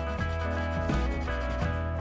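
A soft chalk pastel stick rubbed back and forth on paper, laying down a swatch, heard under background music.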